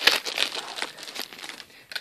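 Packaging crinkling and rustling as a parcel is unwrapped: dense crackles for about a second that then thin out to a few scattered ones.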